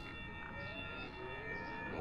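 Faint ambient drone from the film's soundtrack: several steady high tones with a soft wavering tone beneath them.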